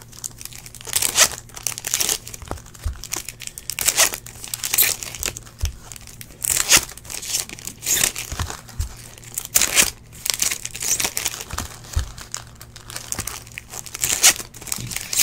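Trading-card pack wrappers crinkling and tearing as packs of 2015 Topps Valor football cards are ripped open and the cards pulled out, in irregular bursts of crackle throughout.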